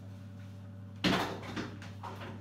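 A cupboard door knocks once about a second in, followed by a short fainter rattle of handling.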